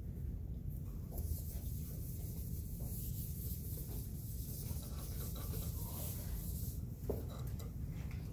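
Dry-erase marker writing on a whiteboard: a scratchy rubbing that starts about a second in and stops near the seventh second.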